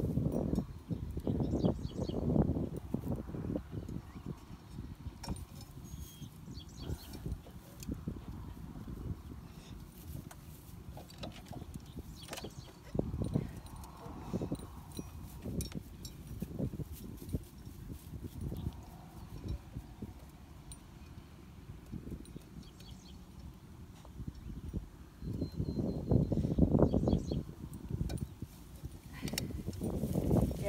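Scattered light clicks and clinks from the line head of a wheeled string trimmer being handled as its trimmer line is replaced, over a low rumble, with a louder stretch of rustling and knocking near the end.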